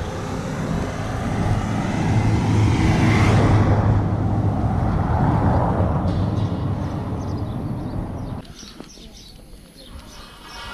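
A motor vehicle passing close by on the road, its engine hum and tyre noise growing to loudest about three and a half seconds in, then fading away. The sound drops off sharply about eight and a half seconds in.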